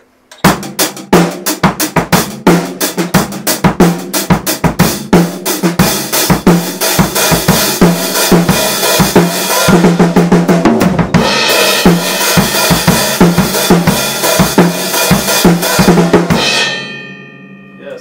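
Rock beat on a drum kit, bass drum and snare under the hi-hats: the hi-hats start closed, are slowly opened to a sizzle, and are hit hard and open for the chorus from about eleven seconds in. The beat stops about sixteen seconds in and the cymbals ring out.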